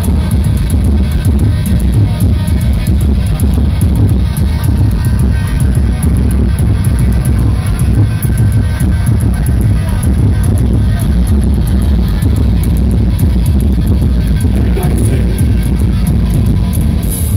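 Heavy metal band playing live at high volume: a dense, steady wall of distorted sound dominated by deep bass, with drum and cymbal hits throughout.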